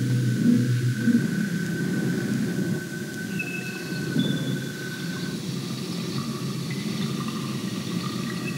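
A steady low rumbling drone, with faint short high tones coming and going after about three seconds.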